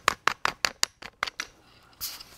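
A rapid run of light, sharp clicks and taps, about eight in the first second, then two more a little later.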